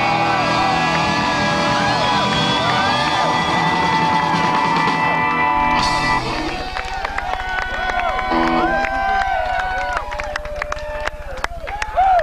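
Live rock band with electric guitars and vocals playing the closing bars of a song, which ends about halfway through. The crowd then cheers, whoops and claps over a steady low hum.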